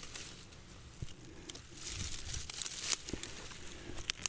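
Leafy undergrowth rustling and crackling as hands push the plants aside, with scattered small snaps.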